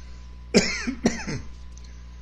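A man coughs twice into his hand, the two coughs about half a second apart, each sudden and short.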